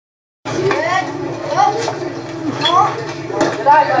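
Silence, then about half a second in the sound cuts in on spectators at a youth baseball game calling out, with repeated rising shouts and a few light metallic clinks.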